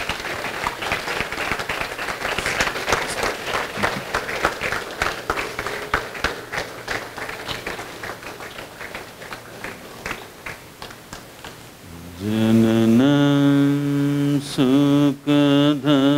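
An audience applauding, the clapping thinning out and dying away over about ten seconds. Then, about twelve seconds in, a deep male voice begins a mantra chant in long held notes, broken twice briefly.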